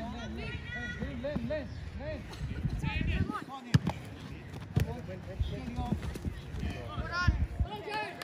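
Voices of players and spectators calling out across a soccer pitch, with a few sharp thuds of a soccer ball being kicked. The clearest thud comes a little before halfway, another about a second later and one near the end.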